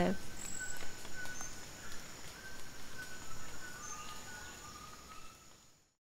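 Rainforest evening ambience: a steady high-pitched insect drone with a series of short whistled calls repeating every half second or so, fading out near the end.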